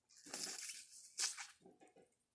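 Wet slurping and crinkling as juice is sucked from a plastic-wrap pouch held to the mouth. There is a longer noisy stretch in the first second, then a short burst a little after a second in.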